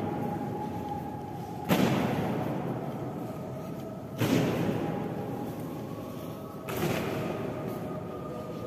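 Honour guard's boots stamping in unison on the stone floor in slow ceremonial marching step: three loud stamps about two and a half seconds apart, each ringing on in the echoing hall.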